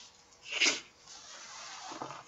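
A man's breath at a close microphone: a short sharp sniff about half a second in, then a long, faint inhale near the end.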